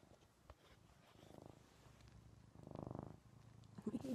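Ragdoll cat purring close to the microphone, a fine rapid rumble that swells with each breath about every one and a half seconds.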